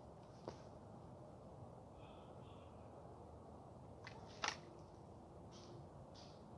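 Near silence: quiet outdoor background with a few faint clicks, the clearest about four and a half seconds in.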